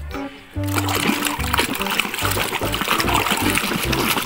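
Water splashing and sloshing in a shallow tub as toys are washed by hand, starting about half a second in, over background music.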